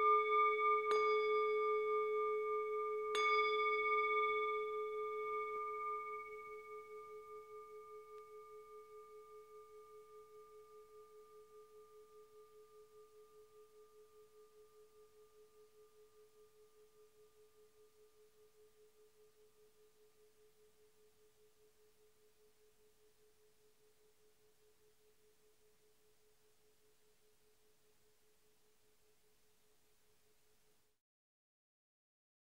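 A singing bowl, already ringing from a strike just before, is struck again about one second in and about three seconds in, then rings out in a long, slowly fading tone with a steady pulsing wobble. It marks the start of a sitting meditation period.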